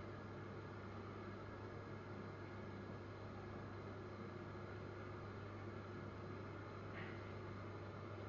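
Faint steady low hum with an even hiss: room tone with no distinct event.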